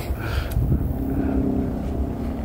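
Excavator's diesel engine running with a steady low rumble, a held engine tone coming up about halfway through.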